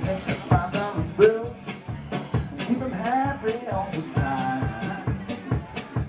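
Live rock band playing: electric guitars over a drum kit keeping a steady beat, with a voice singing.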